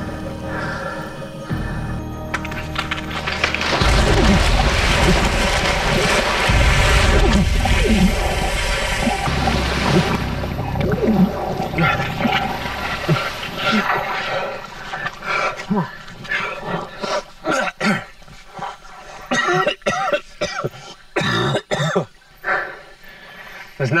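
A man falling into swamp water and thrashing his way out, heavy splashing loudest from about four seconds in, then scattered short splashes and knocks, with his grunts and gasps, over dramatic background music.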